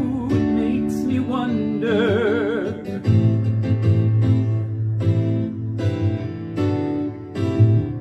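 Instrumental backing music: picked acoustic guitar over a steady bass line, with a brief wavering held note about two seconds in.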